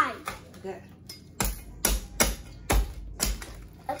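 A meat cleaver chopping into a roast pig's head on the table: about five sharp thuds, roughly half a second apart, starting about a second and a half in.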